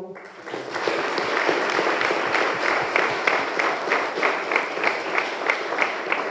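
Audience applauding. After a couple of seconds the clapping falls into an even rhythm of about three claps a second.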